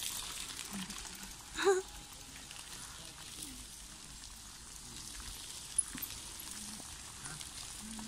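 Faint steady hiss of bicycle tyres and footsteps on a gravel forest path as cyclists ride past.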